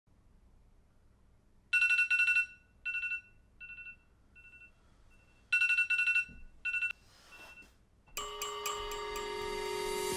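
Alarm ringtone waking a sleeper: bright bell-like beeps in two loud bursts, each trailed by fainter repeats. Music with guitar comes in about eight seconds in.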